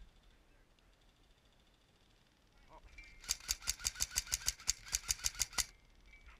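An airsoft gun firing full-auto: a rapid, even string of shots, about ten a second, lasting about two and a half seconds and starting about three seconds in.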